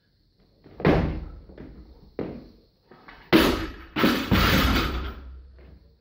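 Loaded barbell with rubber bumper plates hitting the lifting platform. A heavy thud comes about a second in, then more thuds and rattles as the bar bounces and settles, the loudest just past the middle.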